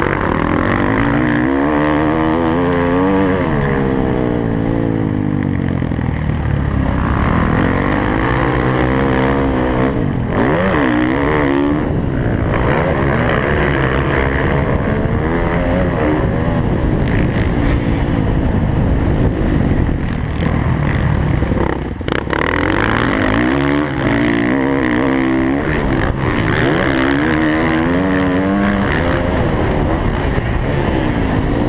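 Motocross dirt bike engine heard close up from an onboard camera, its pitch rising and falling over and over as the rider works the throttle and gears around the track. There is a brief dip in the engine sound about two-thirds of the way in.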